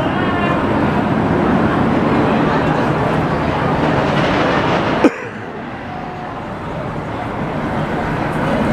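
Roller coaster train rolling slowly along the station track with a steady noise, and voices in the background. A sharp knock about five seconds in, after which the noise drops.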